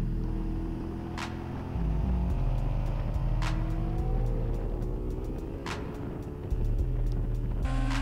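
Sport motorcycle engine running on a race track as the bike accelerates, its pitch rising in the middle, heard under background music.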